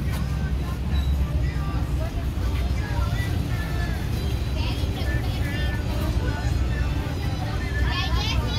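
Busy market ambience: background voices and faint music over a steady low rumble.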